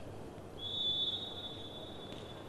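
Referee's whistle: one steady, high note about a second and a half long, starting about half a second in. It is the signal that authorises the serve.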